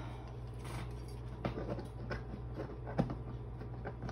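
Quiet handling of small objects: a few light clicks, the clearest about one and a half and three seconds in, over a steady low hum.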